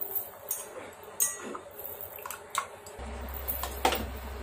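A spatula stirring thick tamarind-and-jaggery chutney in a small nonstick saucepan: irregular scrapes and clicks against the pan. A low steady hum comes in about three seconds in.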